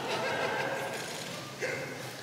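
Audience laughing in a large room, the laughter slowly dying away.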